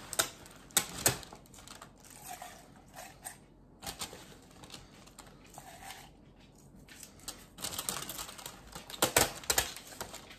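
Irregular clicks and crackles of fresh spinach leaves being packed by hand into a plastic measuring cup, with the cup knocking and rustling, busiest about a second in and again near the end.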